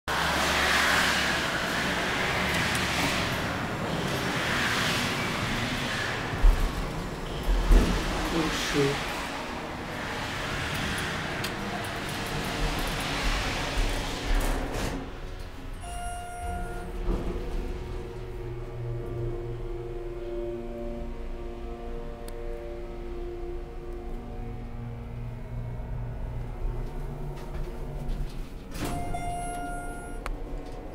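Lobby background of music and voices, with a few knocks, is cut off about halfway through as the Schindler hydraulic elevator's car closes. A short chime follows. The car then rides with a steady low hum from its hydraulic drive, and a second chime sounds near the end as it arrives.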